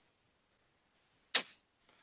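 Near silence of a video call, broken once a little past halfway by a single brief, sharp hiss that fades within a fraction of a second.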